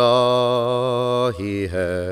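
Chant-like sung vocal in a Sufi-influenced style: one long held note with wide vibrato, which breaks about two-thirds of the way through into a lower, shorter note.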